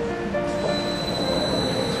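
Background music over the spindle of a large oil country lathe running after being switched on, with a steady high whine that comes in about half a second in.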